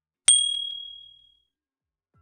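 A single bright ding sound effect for a tap on an on-screen subscribe button, about a quarter-second in. It rings high and fades out over about a second.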